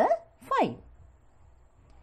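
A woman's narrating voice says the word "five" with a falling pitch about half a second in, then faint room tone for the rest.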